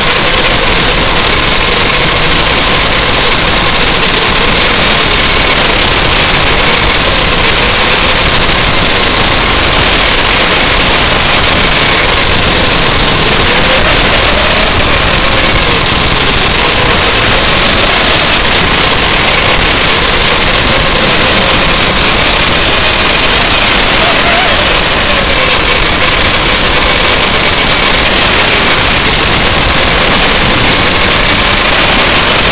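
Loud, steady hiss on the audio of an analog FPV video link from an Eachine Racer 250 quadcopter in flight, with a thin high whine held throughout. Under the hiss a faint tone rises and falls.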